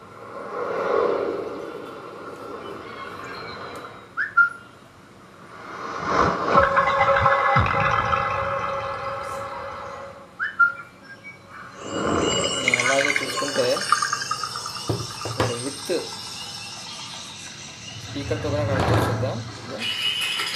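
A song with vocals plays through a woofer driven by a TDA7294 amplifier board as a playback test of the amplifier. The music dips briefly twice.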